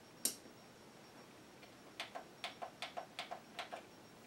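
Plastic buttons on a karaoke machine being pressed: one sharp click, then about ten quick clicks over the next two seconds, some in close pairs.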